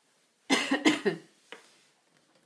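A person coughs twice in quick succession, about half a second in, followed by a faint click.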